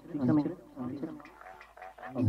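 Electroacoustic tape music built from a processed human voice: short, wavering vocal syllables with no clear words, in a few separate bursts, the first the loudest.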